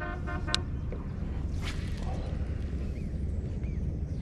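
Baitcasting reel: a short buzzing whir as the handle is cranked, ending in a click. Then, under two seconds in, a brief whoosh of a cast with line running off the spool, over a steady low rumble.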